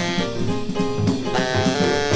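Jazz quartet recording: tenor saxophone playing a quick line of notes over piano, bass and drums.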